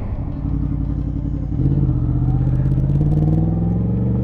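Motorcycle engine idling steadily, its pitch and level stepping up slightly about one and a half seconds in.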